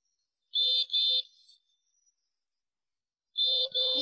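Cartoon bus horn beeping: two short beeps about half a second in, then one more near the end.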